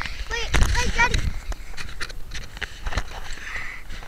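Handling noise on a model rocket's onboard camera: scattered knocks and rubbing with a low rumble as hands grip and pass the rocket body. Brief high-pitched voices in the first second.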